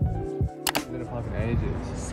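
Chill background music with sustained keyboard notes and a soft kick drum, cut off a little over half a second in by a sharp double click like a camera shutter. After it comes a steady outdoor noise with a voice.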